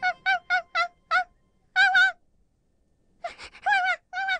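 A bird's short honking calls, each one brief and arched in pitch: a quick run of five, then a pair about two seconds in, then after a short pause another quick run near the end.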